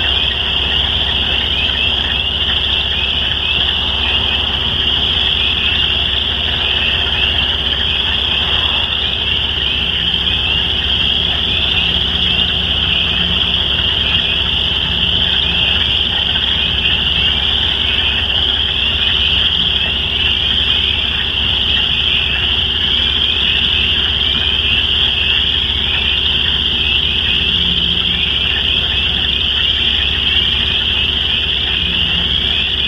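A dense chorus of many frogs calling at once: a continuous mass of rapid, high-pitched repeated notes that never lets up, with a faint low hum underneath.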